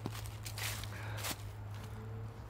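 Footsteps crunching through dry fallen leaves, three steps about half a second apart, over a low steady hum.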